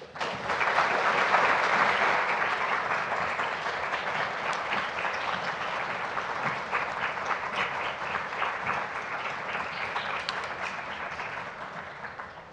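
Audience applauding: many hands clapping together, starting suddenly, loudest in the first couple of seconds, then slowly tapering off.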